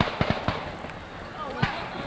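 Fireworks bangs: a quick run of four sharp bangs in the first half second and another about a second and a half in, with shells seen rising. People's voices carry over the top.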